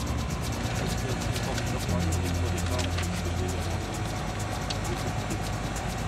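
A Diamond DA40's piston engine and propeller running at low taxi power, heard inside the cockpit as a steady drone. Its note shifts slightly about two seconds in.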